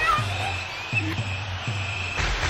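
Background music: three low bass notes under a steady held high tone.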